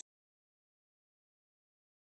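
Complete silence: the sound track drops out to nothing.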